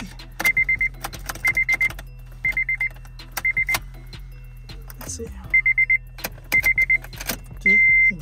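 Car dashboard warning chime beeping in quick groups of four, about once a second, mixed with sharp clicks and rattles of a freshly cut key being worked in the ignition lock. The beeping stops briefly around the middle and changes to a longer single beep at the very end.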